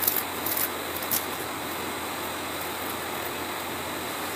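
Steady hiss of background noise with no speech, with a few faint clicks in the first second or so.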